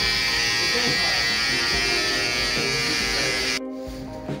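Handheld electric trimmer buzzing steadily as it runs over a man's cheek and jaw stubble, cutting off suddenly near the end.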